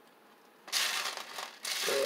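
Small plastic beads rattling in a plastic tray as fingers stir through them, in two short bursts, the first a little under a second in.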